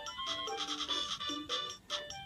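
VTech Letter Sounds Learning Bus playing its electronic waiting tune through its small built-in speaker, a simple melody of short stepped notes, while it waits for a letter button to be pressed in its Sound Match game.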